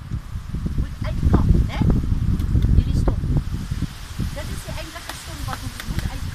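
Irregular chopping strikes of a blade into a fibrous palm stump and its roots, with the crunch and rustle of cut fibres. A voice is heard in places between the strokes.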